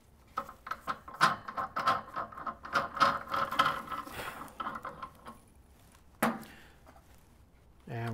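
Metal safety cap being unscrewed from the fill port of an L160 hydrogen welding machine: a quick run of small clicks and scrapes for about five seconds, then one sharp knock about six seconds in.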